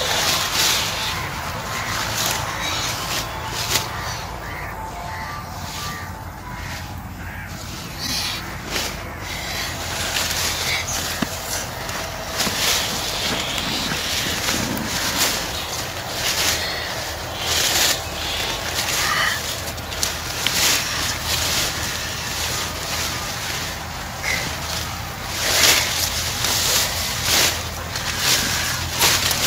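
Leafy sweet potato vines rustling and crackling irregularly as they are pulled and pushed aside by hand, with a steady low hum underneath.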